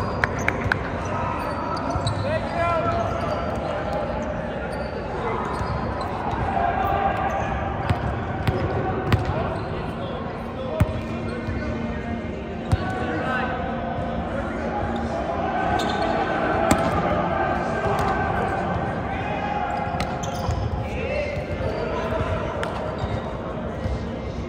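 Volleyball play in a large, echoing gym: sharp smacks of the ball being hit, scattered every few seconds, over the continuous chatter and calls of the players.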